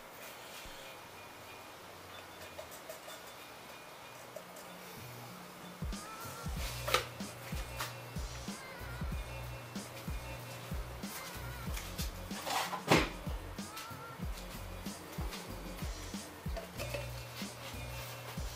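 Background music with a steady bass line that comes in about six seconds in. Two sharp knocks sound over it, one about seven seconds in and one near thirteen seconds.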